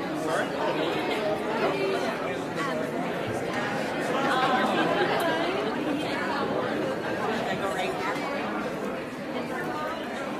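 Church congregation greeting one another: many voices chatting at once, overlapping at an even level in a large sanctuary.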